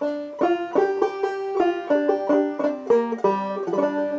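Bart Reiter "Round Peak" model banjo with a 12-inch pot, picked with a metal finger pick: a steady run of plucked notes, about three a second, with a warm tone.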